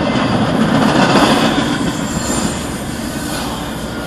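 Double-stack intermodal freight train rolling past: the steady noise of its wheels on the rails, loudest in the first couple of seconds, heard from inside a car.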